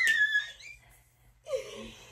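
A woman's high-pitched excited squeal, held for about half a second, then a short falling vocal cry about a second and a half in: celebrating a correctly guessed flavour.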